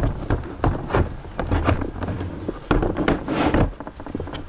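MaxTrax nylon recovery boards knocking, clacking and scraping against the mount and the diamond-plate canopy door as they are set back into a quick-release mount: irregular clatter, busiest around three seconds in.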